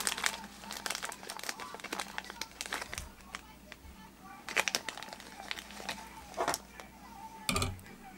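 Clear plastic packet crinkling and crackling irregularly as a pinch of orange Angora goat dubbing is pulled out of it, with a few louder crinkles about halfway through and near the end. A soft knock comes just before the end.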